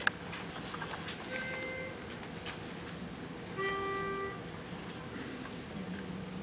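A sharp click, then two short held notes sounded to give an a cappella choir its starting pitches. The second note is lower and louder than the first.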